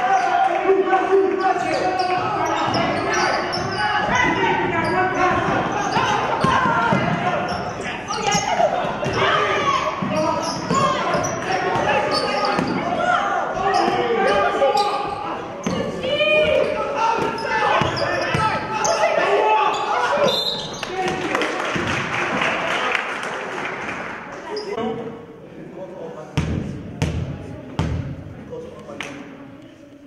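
Live youth basketball game in a gymnasium: a ball bouncing on the court amid many voices shouting and talking, with a swell of crowd noise about three-quarters of the way through, then quieter with a few sharp knocks near the end.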